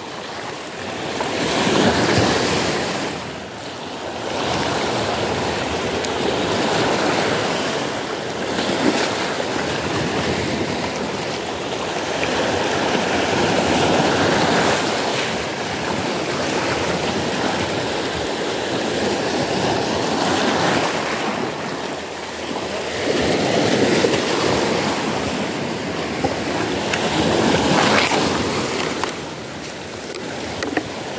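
Small sea waves washing in over rocks and pebbles at the water's edge, the rush of surf swelling and easing every few seconds.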